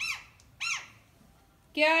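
Pet green parrot giving two short, high-pitched calls, each rising and falling in pitch, one right at the start and one about 0.7 s in. Near the end a voice says 'kya'.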